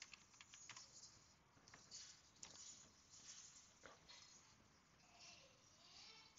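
Near silence with a few faint, scattered taps of a computer keyboard and mouse clicks, as someone types into the Start menu search and opens a program.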